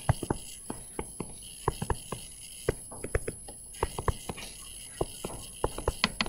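Irregular light taps and clicks, about three a second, over faint room noise.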